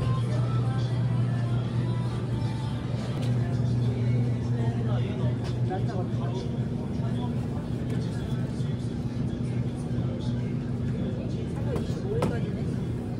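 Supermarket interior sound: a steady low hum under faint background voices and store music.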